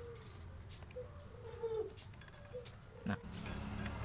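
Faint scraping and light ticking from a thin metal tool clearing wet paper residue out of the empty starter-pinion bushing seat of a scooter crankcase. Short, high squeaky calls from an animal sound over it several times.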